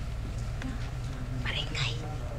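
Hushed whispering and low murmured voices over a steady low hum, with a brief high hiss near the end.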